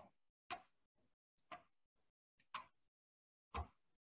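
Faint, regular sounds of a person doing slow mountain climbers on an exercise mat, about one stroke a second, with a heavier thump near the end.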